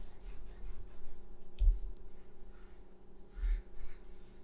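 Coloured pencil scratching across paper in short strokes, quick and close together in the first second, then a few more spaced out. Two soft low thumps come about halfway through and near the end.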